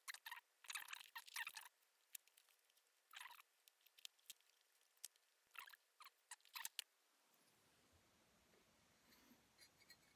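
A hand cutting tool crunching through the upper of a composite-toe safety shoe, to cut it open. Faint, in short groups of quick cuts: one around the first second, another near three seconds, more around six seconds.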